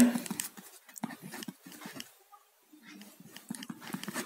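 Faint, irregular scratches of a ballpoint pen writing a word on paper, in short spurts with a pause around the middle.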